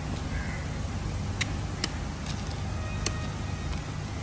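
A metal blade clicking sharply against a plastic tub and steel counter a few times as durian flesh is scooped out of the husk, over a steady low background rumble.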